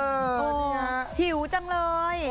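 A woman's voice drawn out in long cooing "aww" sounds, twice, the second beginning about a second and a half in.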